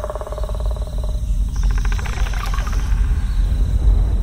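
Film-teaser sound design: a deep, steady rumble under a fast pulsing drone that shifts higher about a second and a half in.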